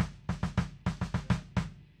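A short fill played on a drum kit: about a dozen quick hits in an uneven rhythm, stopping about a second and a half in.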